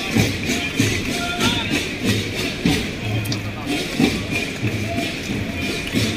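Parade marching music with a steady beat, about three beats every two seconds, with voices in the background.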